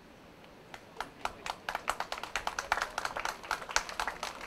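Audience applauding: a few scattered claps about a second in, growing into steady clapping.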